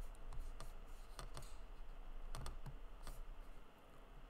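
Irregular soft clicks and taps of a computer keyboard and mouse, about eight in four seconds, over a low steady hum.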